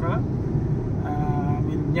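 Steady low rumble of a car's engine and tyres heard inside the cabin while driving, with a brief faint voice about a second in.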